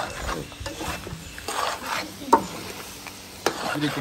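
Goat tripe sizzling as it fries in massalé in a pot, stirred and scraped with a spoon, with a sharp knock a little over two seconds in.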